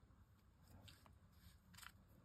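Near silence, with a few faint light scrapes of cardstock being handled, the last and clearest just before the end.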